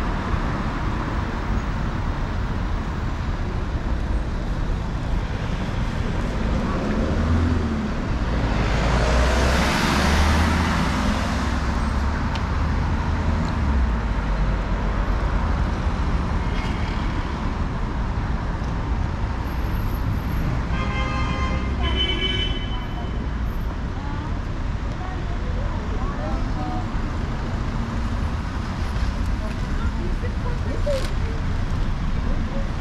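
City street traffic: a steady rumble of car engines and tyres on the road, with one vehicle passing close and loud about eight to twelve seconds in.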